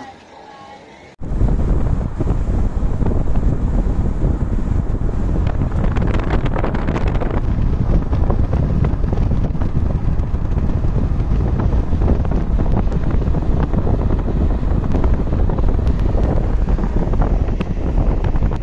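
Loud, steady rumble of wind and road noise from a moving car, starting abruptly about a second in.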